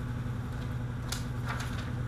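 Sheets of paper being handled and laid on a bench, a few short crackles from about a second in, over a steady low room hum.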